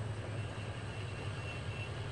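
Steady low drone of a boat's engine running out on the river.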